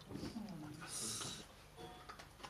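A person's low voice sliding down in pitch, then a short hiss about a second in.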